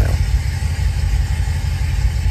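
A C7 Corvette Z06's supercharged 6.2-litre LT4 V8 idling, a steady low rumble heard from inside the cabin.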